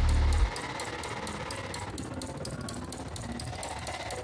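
Background electronic music. The bass drops out about half a second in, leaving a quieter stretch with steady ticking percussion.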